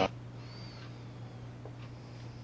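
Quiet room tone with a steady low hum, a faint thin high squeak about half a second in, and a tiny tick near the end.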